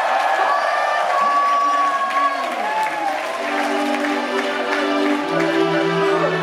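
Live band music from a keyboard synthesizer holding long notes over a cheering, clapping crowd. About halfway through one tone slides down, and then sustained chords take over.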